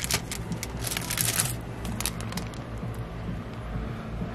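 78 rpm records in paper sleeves being flipped through and slid against one another: a few sharp clicks and a papery rustle about a second in, then lighter scattered clicks.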